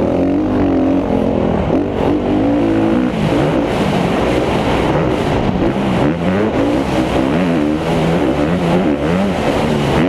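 Motocross dirt bike engine under hard racing load, revving up and dropping back again and again as the rider accelerates and shifts through the gears, heard from the rider's own bike.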